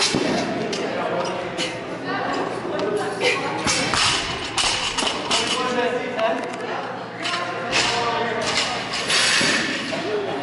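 Loaded barbells with bumper plates dropped onto the gym floor, several thuds, with voices talking and calling out throughout.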